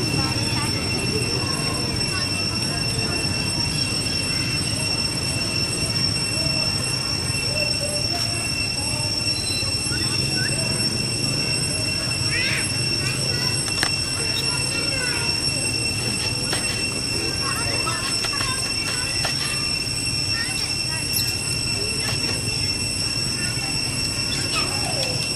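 A steady high-pitched whine held on one pitch with overtones, over a low rumble, with a few faint short rising and falling calls about halfway through and near the end.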